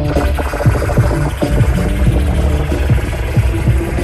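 Hip hop DJ set through a sound system: a heavy, steady bass beat with turntable scratching, short record sweeps repeating over the beat.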